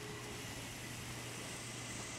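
Steady low hum over an even hiss inside a car.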